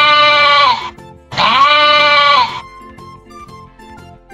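A sheep bleating twice: two long bleats of about a second each, half a second apart, each rising and then falling a little in pitch. They are played as the call of the urial, a wild sheep, over children's background music.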